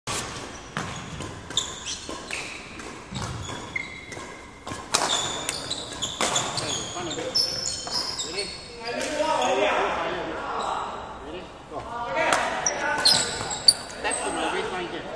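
Badminton rackets striking shuttlecocks in quick, irregular succession during a tapping drill, each hit a sharp crack echoing in a large hall, with one especially loud hit near the end. Short high squeaks of court shoes on the wooden floor come between the hits.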